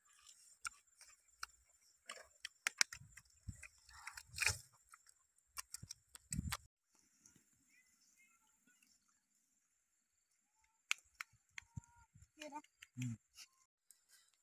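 Several dogs eating pieces of cooked duck egg off leaves on the ground: clusters of crunching and chewing clicks through the first half, a short lull, then a few more clicks near the end.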